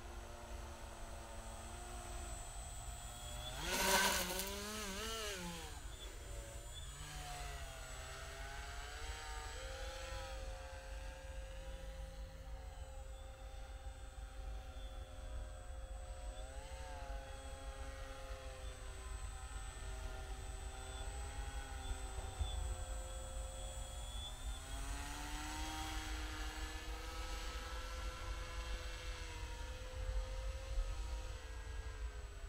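Motor and propeller of a radio-controlled paramotor paraglider in flight: a whine whose pitch rises and falls, loudest about four seconds in.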